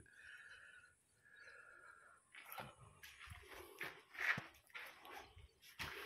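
Faint footsteps and scuffs of someone walking over gravel, rubble and concrete floor, with two soft hissing sounds in the first two seconds.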